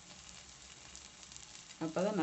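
Moringa-leaf adai batter sizzling faintly on a hot tawa: a soft, even crackle as it cooks through.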